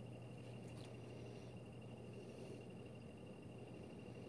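Near silence: faint room tone with a steady low hum and a faint, steady high-pitched tone.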